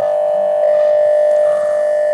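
A steady mid-pitched tone held without wavering, starting abruptly and lasting a couple of seconds.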